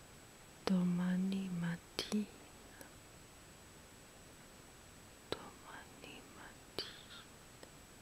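A woman's soft voice: a short held voiced sound about a second in, then whispering with small mouth clicks near the end.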